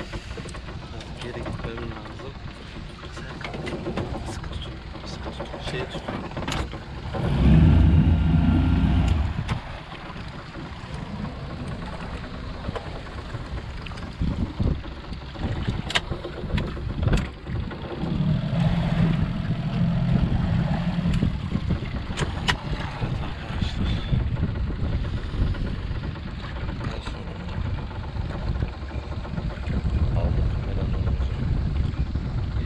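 Wind buffeting the microphone on a small boat at sea, with a few sharp clicks of fishing tackle being handled. A louder low rumble swells about seven to nine seconds in and again near the twenty-second mark.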